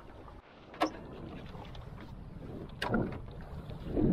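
Wind rumbling on the microphone aboard a small open boat on the sea, with a sharp click about a second in and a louder knock near the end, likely the boat being handled.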